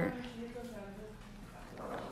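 A woman's faint drawn-out hum, a held filler sound between phrases that lasts about a second and a half and then fades.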